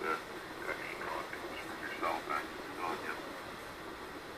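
Faint, broken voice fragments over steady hiss from a ham radio transceiver receiving 40-metre single sideband (LSB): a weak station barely above the band noise.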